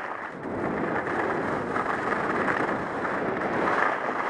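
Skis sliding and scraping over groomed snow while skiing downhill, with air rushing over the helmet camera's microphone: a steady noisy rush that dips briefly just after the start.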